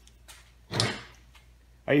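A short metal scrape and clunk, about two-thirds of a second in, as a piston with its connecting rod is picked up to square a ring in the bore.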